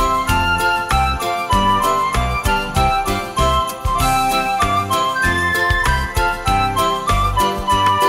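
Instrumental Christmas music backing track with a steady beat, a low bass line and tinkling bell-like tones, playing through a pause in the children's recorder part.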